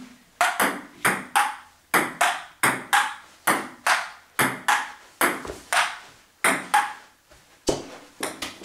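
Table tennis rally: the celluloid ball clicking off paddles and the table back and forth, hits and bounces coming in quick pairs about every three-quarters of a second, each with a short ring.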